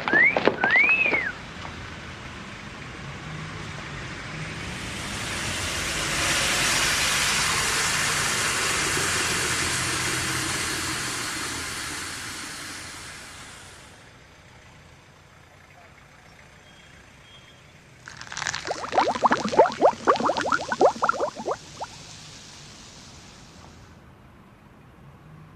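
A motor vehicle passing on a city street, its noise swelling over several seconds and fading away. Near the end comes a short flurry of bright pitched sound lasting about three seconds.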